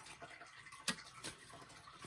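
Paper banknotes being handled and slipped into a binder envelope: faint rustling with small ticks and one sharp click a little under a second in.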